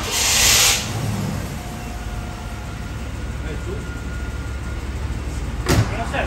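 A 1991 Cadillac Fleetwood's V8 is started: a loud burst as it catches in the first second, then it settles into a steady low idle. A sharp knock sounds near the end.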